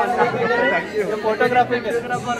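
Several men talking over one another close by: lively crowd chatter.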